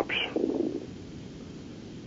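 Pause in a phone-in caller's speech heard over the telephone line: a brief low rumbling noise just after the last word, fading into faint steady line hiss.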